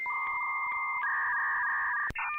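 Electronic outro music of steady held synthesizer tones in a chiptune style: a lower note comes in at the start, and a higher note takes over from the first high one about halfway through.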